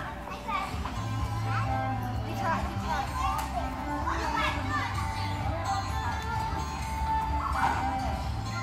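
Children playing and calling out, over background music with a held bass line.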